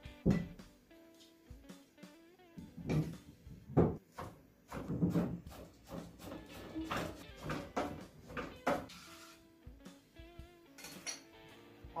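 Knife chopping fresh parsley on a plastic cutting board: a dozen or so irregular sharp knocks of the blade on the board, over soft background guitar music.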